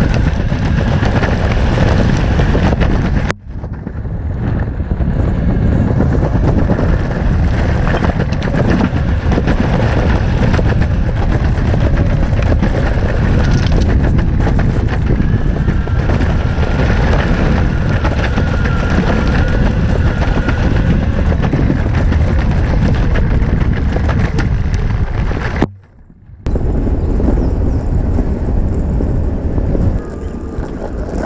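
Six-wheel DIY electric skateboard rolling over pavement: a dense, steady rumble from its wheels, with wind buffeting the microphone and a faint whine at times. The sound cuts out abruptly twice, about three seconds in and again for under a second near the end.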